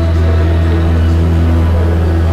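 Church music: an organ holding a low sustained chord, with steady higher notes above it.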